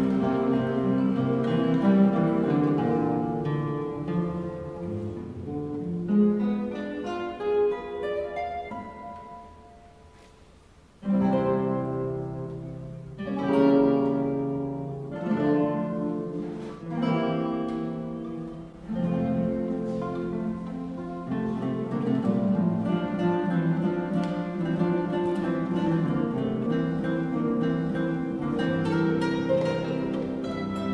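An ensemble of six classical guitars playing together. The music thins out and dies down to a soft ebb about ten seconds in, then the full ensemble comes back in strongly and plays on.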